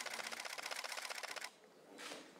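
Many camera shutters firing in rapid, overlapping bursts, a dense clatter of clicks from several press cameras at once. It stops abruptly about one and a half seconds in.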